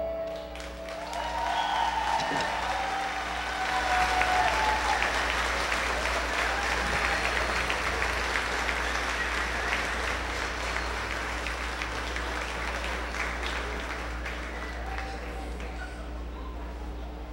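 Audience applauding right after the music ends, with a few shouts near the start. The applause slowly tapers off, over a steady low hum.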